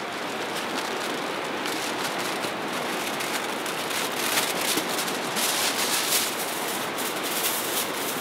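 Steady rush of a fast river, with aluminium foil crinkling and crackling in the hands from about two seconds in as a sheet is handled.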